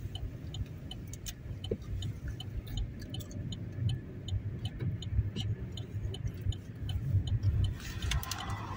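A car's turn-signal indicator ticking steadily, about two and a half ticks a second, over the low rumble of the car running along the road, heard from inside the cabin.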